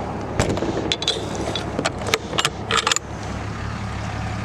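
Horse trailer's metal side door to the living quarters being swung and shut: a run of sharp metallic clicks and rattles from the door and its latch in the first three seconds. A low steady hum runs underneath.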